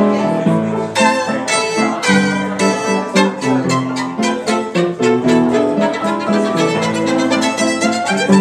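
A violin played with the bow: held notes at first, then, from about a second in, a fast run of short, separate notes.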